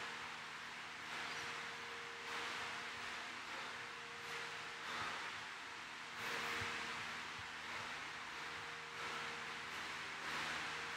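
Heavy, rhythmic breathing, the hiss of each breath swelling and fading about once a second, as a man recovers between burpee sets. A faint steady hum lies underneath.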